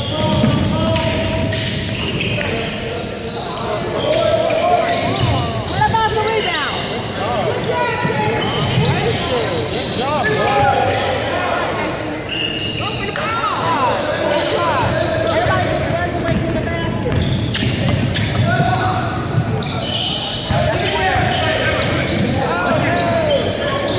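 Game sounds on a hardwood gym floor: a basketball bouncing as it is dribbled, sneakers squeaking in short bursts, and players' and spectators' voices, all echoing in the large gym.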